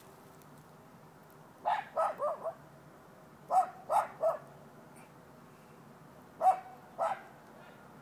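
A dog barking in three short bursts: four barks, then three, then two.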